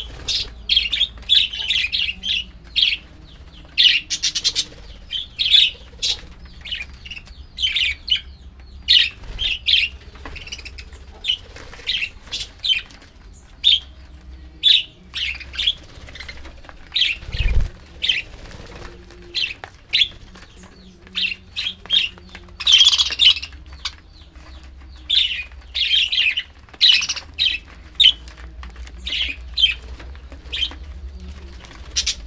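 A flock of budgerigars chirping, many short calls overlapping in quick succession, with wing flutters as birds fly between perches and feeding bowls. A single low thump comes a little past halfway.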